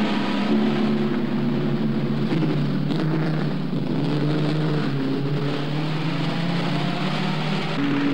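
Racing car engines running at speed, a steady note that steps and shifts in pitch a few times and sags slightly near the end, heard on a narrow-band old film soundtrack.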